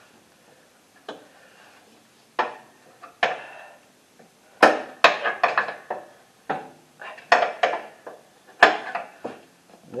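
Pliers clinking and tapping against a steel cotter pin and the deck-lift bracket as the pin's ends are bent over: a dozen or more irregular sharp metal clicks and taps, thickest in the second half.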